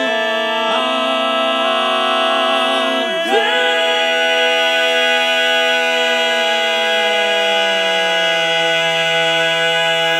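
Male barbershop quartet singing a cappella: long, held, ringing chords without words. A new chord comes in about three seconds in, and the chord slides slowly downward in the second half.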